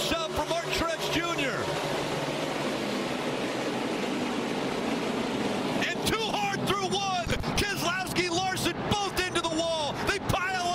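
Broadcast sound of a NASCAR Cup Series field accelerating on a restart: many V8 stock cars at full throttle together, a dense, steady drone. Excited commentary voices are heard at the start and again from about six seconds in.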